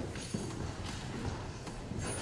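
Footsteps on a wooden floor, a few irregular knocks.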